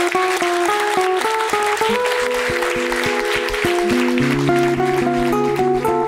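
Audience applause over the plucked introduction of a nylon-string classical guitar, picked note by note; the clapping dies away near the end as the guitar carries on.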